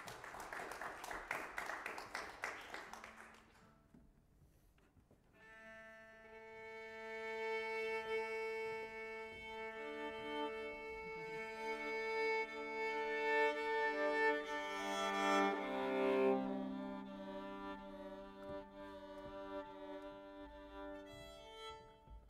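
Audience applause for the first three seconds or so, then a string quartet begins with long held bowed notes. The notes stack into sustained chords, with more voices joining and the sound swelling to its loudest about two-thirds of the way in, then easing off.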